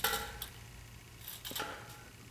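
A few faint, light clicks from a tape measure being handled against a trailer fender, one at the start, one about half a second in and two about a second and a half in, over quiet room tone.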